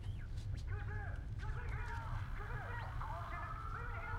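A radio receiver being tuned: short warbling whistles and scraps of garbled sound over a steady low hum. About three seconds in, a long held tone slowly rises in, sounding like an air-raid siren heard over the radio.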